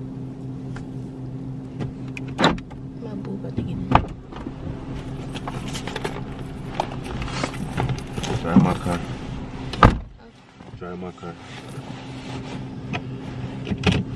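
Steady low hum of a car idling, heard inside the cabin, with a few sharp clicks and knocks from handling things in the car. The loudest knock comes about ten seconds in, and the low hum dips just after it.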